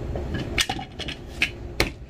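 Several sharp plastic clicks and knocks as the lid of an electric blade spice grinder is handled and pressed down. The last click, near the end, is the loudest. The grinder's motor is not running.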